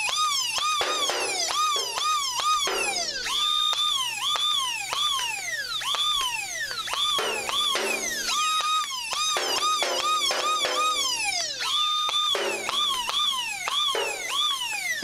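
Synthesized laser-gun 'pew' sound effects: a continuous run of electronic tones, each sweeping up, sometimes held briefly, then gliding down, about two a second.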